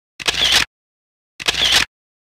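Camera shutter sound effect, heard twice about a second apart, each a short identical burst with dead silence between them.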